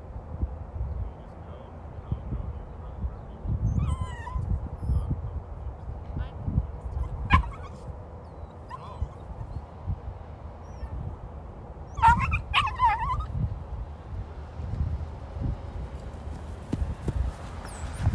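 A dog whining and yipping in short calls: a falling whine about four seconds in, a sharp yip a few seconds later, and a quick run of yips and barks about twelve seconds in. The calls sit over a loud, uneven low rumble.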